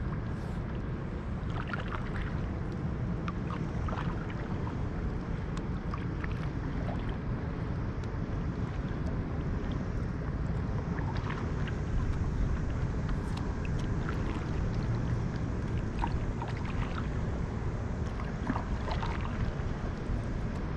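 Water lapping and splashing against a small boat moving over calm sea, with small irregular splashes over a steady low rumble.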